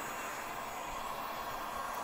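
Handheld heat gun blowing steadily, a level airy rush, as it heats wood-burning paste on denim so the design scorches dark.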